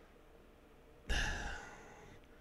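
A man's single breath sighed into a close microphone about a second in, fading away.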